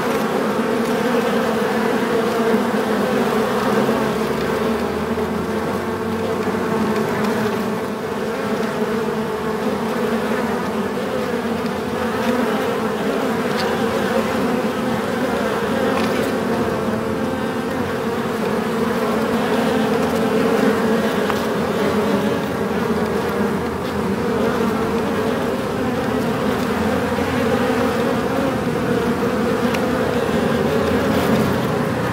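Many bees buzzing together in a beehive: a steady, unbroken hum.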